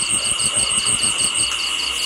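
Insects trilling: a steady high-pitched buzz with a fast, even pulsing over it, about seven pulses a second.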